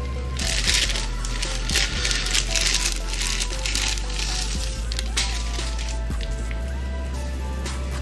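A clear plastic bag crinkling as a laptop keyboard is pulled out of it, over most of the first five seconds. Background music with steady bass notes plays throughout.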